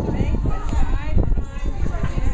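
Several people talking at once in untranscribed background chatter, with a few short clicks and knocks and a steady low rumble underneath.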